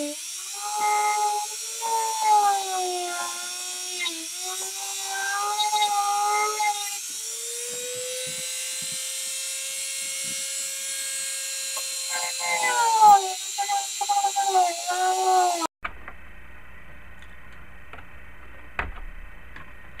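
Dremel rotary tool with a cutting wheel whining as it cuts into the plastic dashboard. Its pitch wavers and sags as the wheel bites, holds steady and higher for a few seconds midway, then wavers again before cutting off abruptly near the end.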